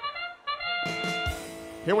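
The arena's match-start signal: a trumpet-like bugle call of a few held notes, sounding just as the match begins. A noisy swell joins it about a second in.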